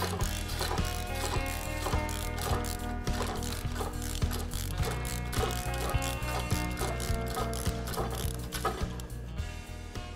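Lever-operated chain hoist ratcheting as its lever is worked to let a heavy steel manway cover down: a run of pawl clicks, a few per second, over background music.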